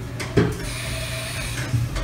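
Haas MDC 500 machining centre making a tool change with its side-mounted swing-arm tool changer: a clunk about half a second in, a hiss of about a second with a faint steady whine, then another clunk near the end.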